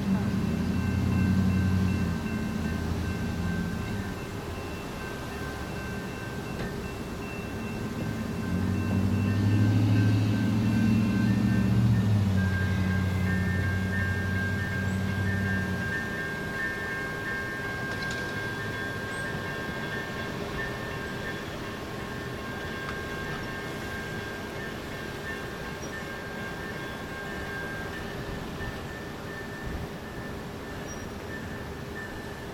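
Horn of an approaching Amtrak passenger train sounding a long blast, then after a few seconds a longer one whose tone shifts about halfway through, while grade-crossing warning bells ring steadily throughout.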